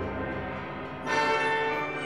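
Orchestra playing with bells ringing over it in a sustained peal; a new loud chord with fresh bell strokes enters about a second in.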